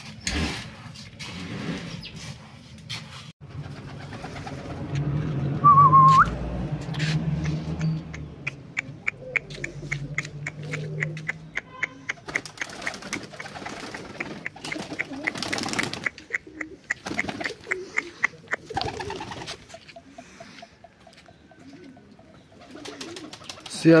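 Domestic pigeons cooing in low tones while feeding, with a quick regular run of light ticks through the middle. A short, loud, wavering whistle-like call sounds about six seconds in. In the first few seconds a seed-and-grit mix is scraped round a metal basin.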